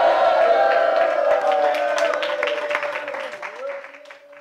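Church congregation answering a shouted "Hallelujah" with a crowd of voices and scattered clapping. The sound dies away steadily over about three seconds.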